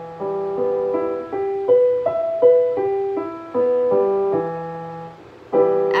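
Digital piano playing a cross-hand arpeggio in E minor: a low E held in the bass while single notes of the chord are struck one after another, climbing and falling, each left to fade. A new chord is struck near the end.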